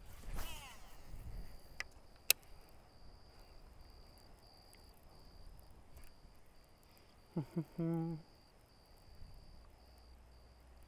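A spinnerbait cast with a baitcasting reel: line whizzing off the spool with a falling whir just after the start, then two sharp clicks. A high, pulsing insect chirp runs underneath, and a short laugh comes near the end.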